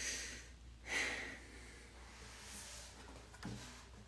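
A woman breathing out audibly twice, once at the start and again about a second in, over a faint steady low hum.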